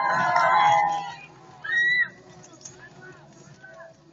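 A cheering squad shouting a cheer together, loud for about the first second. One shrill rising-and-falling yell follows about two seconds in, then quieter crowd murmur.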